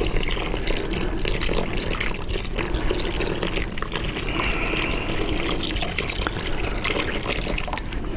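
Water pouring in a steady stream from a plastic measuring jug into a plastic bucket of casting plaster powder, the first stage of mixing the plaster.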